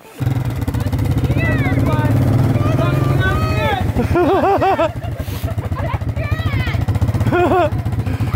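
Four-wheeler (ATV) engine running steadily close by, a low rumble under the whole stretch, with people's voices calling out over it a few times.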